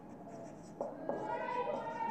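Marker writing on a whiteboard: faint squeaking and scratching strokes that begin a little under a second in.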